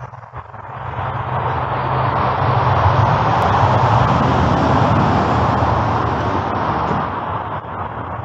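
A motor vehicle going by, its engine and road noise rising to a loud peak in the middle and then fading away.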